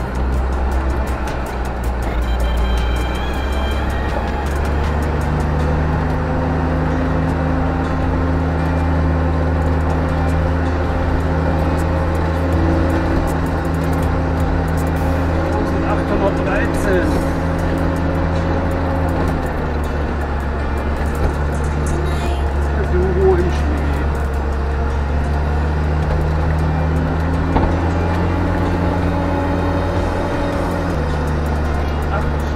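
Bucher Duro II 6x6 truck's diesel engine running steadily, heard from inside the cab while driving a rough gravel track. Its pitch steps up about five seconds in, drops about twenty seconds in and rises again near the end.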